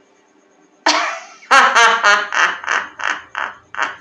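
A villain's theatrical roaring laugh: a sudden loud burst about a second in, then a string of 'ha' pulses about three a second.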